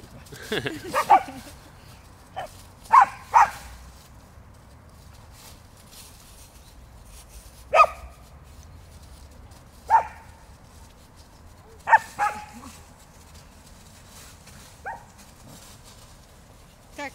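A dog barking during play: short, sharp barks, some single and some in quick pairs, a few seconds apart, the last one fainter.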